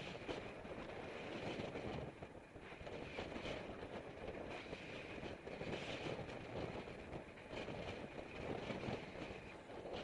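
Wind rushing over the microphone of a camera mounted on a moving road bike, mixed with the rumble of tyres on asphalt, with small knocks and rattles from the mount throughout.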